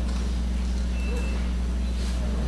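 Steady low room hum, unchanging throughout, with faint murmuring voices in the background.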